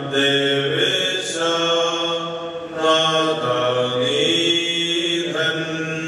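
A hymn chanted in long, held notes, each sustained for about a second before moving to the next pitch, over a steady low tone.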